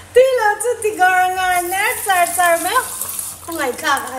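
A person's high-pitched voice making several drawn-out wordless cries that rise and fall in pitch.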